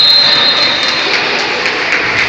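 A referee's whistle blowing one long, steady, high-pitched blast that ends about a second in, over the general din of a school sports hall.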